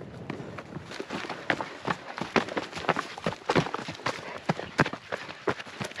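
Trail-running footsteps: shoes striking a dirt and stony mountain path in an uneven patter of short thuds, several a second, with a faint rustle of movement between.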